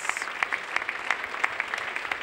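Indoor audience applauding, a steady patter of many hands clapping.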